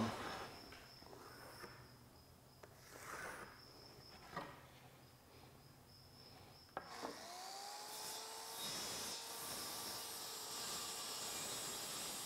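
Plywood being handled, with soft rubbing and scraping and a small knock. About seven seconds in, a motor starts and its whine rises in pitch before settling into a steady run with an airy hiss.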